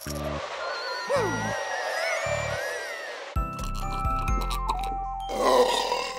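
Cartoon soundtrack music with sound effects and gliding tones; a low bass note comes in about three seconds in, and a cartoon baby's loud cry comes near the end.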